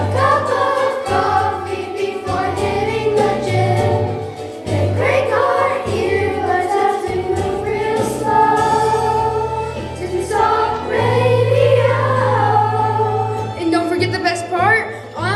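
A chorus of sixth-grade children singing a song together, with instrumental accompaniment holding long low bass notes.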